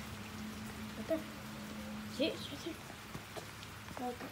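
Steady rain falling, with a low steady hum that cuts off about two seconds in.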